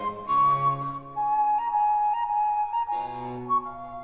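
Baroque chamber music: a flute plays long held notes stepping downward over a basso continuo, whose low notes enter about a third of a second in and again near three seconds. There is no singing here.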